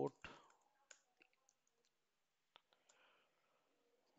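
Faint computer keyboard typing: a handful of scattered, unevenly spaced keystroke clicks over near silence.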